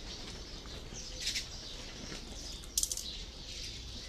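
Two short bursts of bird sound, one about a second in and a sharper one near three seconds, over a faint steady background hiss.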